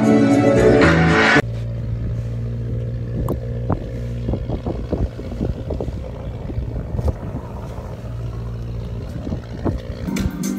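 Choir music that cuts off suddenly about a second and a half in, followed by a steady low hum with scattered faint knocks and clicks.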